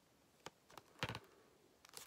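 A few light clicks and knocks from a plastic DVD case being handled and turned over, the loudest about a second in.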